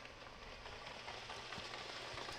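Faint, steady outdoor racetrack background noise with a low hum, slowly getting louder, as the field of trotters and the starting-gate car move off.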